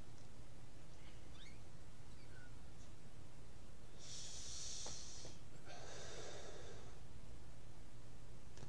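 A person smoking a cigarette: a hissing breath about four seconds in, a drag on the cigarette, then a longer, fuller breath as the smoke is blown out, over a steady low hum.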